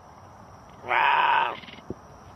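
A cougar giving one short call about a second in, with a faint knock just before the end.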